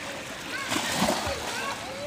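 A child jumping feet-first into a swimming pool: one splash into the water, loudest about a second in.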